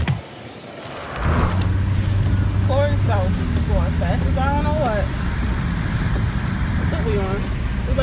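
Steady low rumble of a Nissan car driving, heard from inside the cabin, starting about a second in. A person's sing-song voice rises and falls over it from about three seconds in and again near the end.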